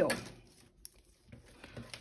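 Faint handling of a cloth tape measure being unrolled and laid out by hand, with one short soft click a little under a second in.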